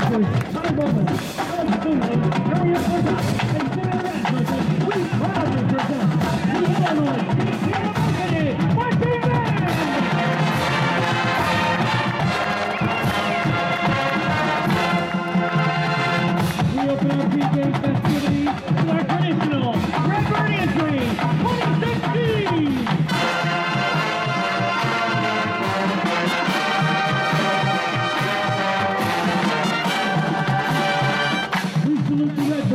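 College marching band playing, with the drumline's snares and bass drums under brass including sousaphones. From about two-thirds of the way in, the brass holds long sustained chords.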